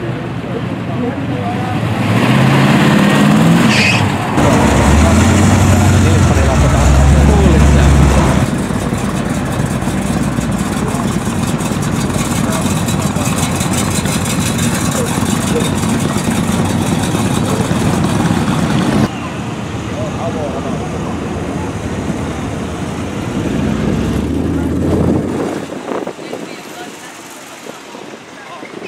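American muscle cars pulling away and driving past one after another, their engines revving and rumbling. The engines are loudest several seconds in, with a last rev before the engine noise falls away near the end.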